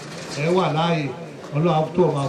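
A man's voice speaking in two short phrases, words not made out.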